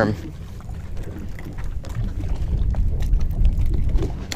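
Low, fluctuating rumble of wind buffeting the microphone while a spinning reel is cranked to bring in a hooked fish, with a few faint ticks.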